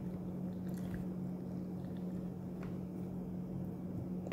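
Mouth chewing a bite of fresh yellow date, faint and wet, with a few soft clicks. A steady low hum runs underneath.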